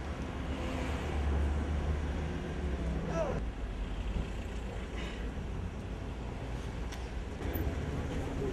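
A motor vehicle's engine idling with a steady low hum, strongest in the first half, with faint voices in the background.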